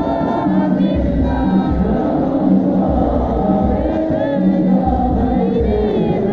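A crowd of men singing Islamic devotional songs (sholawat) together, loud and steady, with a low beat recurring about once a second under the voices.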